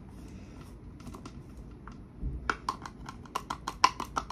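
A quick, irregular run of light clicks and taps from small plastic makeup containers and lids being handled, starting about halfway in.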